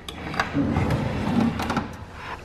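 Key turning in the lock of a metal post office box with a few clicks and rattles, then the small metal box door swinging open.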